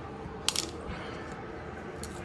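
A single sharp click about half a second in, over a faint steady background.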